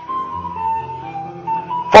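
Background music of slow, held electronic notes, a simple melody stepping over sustained bass notes. A man's voice starts right at the end.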